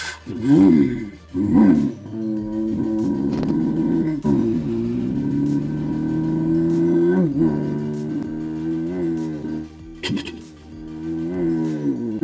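A man's voice making a drawn-out, engine-like hum for a cartoon car pulling away. It starts with a few quick downward swoops, holds steady, then wavers up and down near the end.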